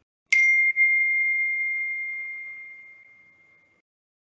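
A single ding: one clear high tone that starts suddenly and fades away over about three seconds.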